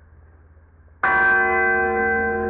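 A bell strikes once about a second in and rings on with several steady tones.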